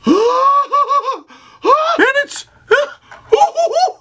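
A man squealing in excited delight: four high-pitched, wavering cries, the first rising sharply at the start, with short breaks between them.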